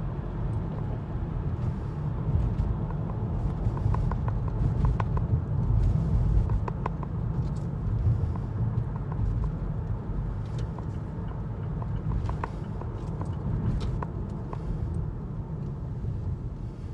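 Steady low road and engine rumble of a car driving along, heard from inside the cabin, with scattered light clicks.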